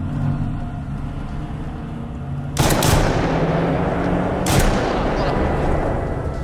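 A sudden burst of gunfire about two and a half seconds in: a few sharp cracks, then a dense crackle of shots, with another loud crack about two seconds later, all over a low steady drone.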